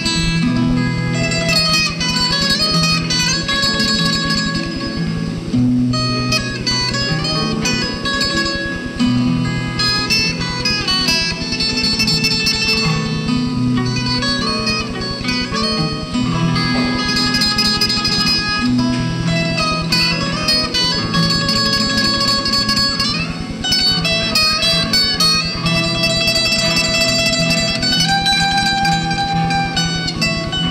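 Viola caipira played solo, picking an Italian song melody in held notes over a bass line in the low strings.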